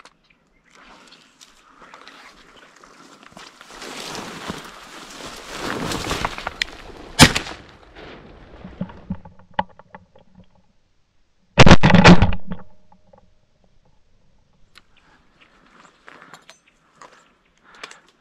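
A swelling rush of noise from a large flock of ducks lifting off the marsh, then a single sharp 28-gauge shotgun shot about seven seconds in, followed about five seconds later by a second loud blast lasting about a second.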